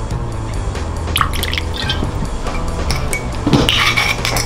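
Campari poured from its bottle into a crystal rocks glass, with background music with a steady beat underneath. There are light clicks about a second in and a louder clink near the end.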